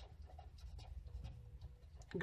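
Faint scratching of a felt-tip marker nib on paper, in short strokes as a word is written out.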